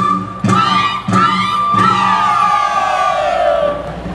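A group of voices shouting and whooping over a held high note of Andean folk music. Several quick rising shouts come in the first half, then one long, falling group cry fills the second half as the held note stops near the end.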